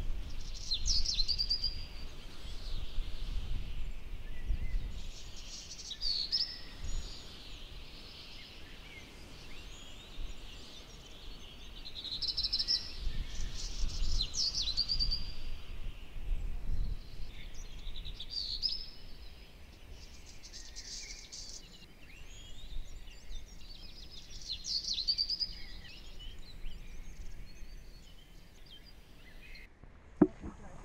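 A songbird singing short chirping phrases every few seconds, over a low, uneven rumble of wind on the microphone.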